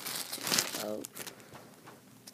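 Small clear plastic bag of spare visor screws crinkling as it is handled, loud in the first second and fading off after about a second.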